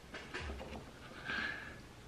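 Faint rubbing and a short, thin squeak of a cork twisting against a wine bottle's glass neck as a two-prong cork puller is turned and drawn upward.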